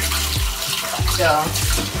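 Yellow onions sizzling in hot oil in a pan, a steady hiss.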